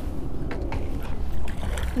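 Wind rumbling on the camera microphone, with a few faint knocks or clicks over it.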